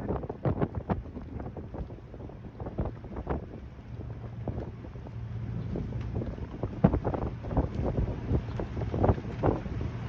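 Wind buffeting the microphone in irregular gusts over a steady low hum from a boat's engine, which grows louder in the second half.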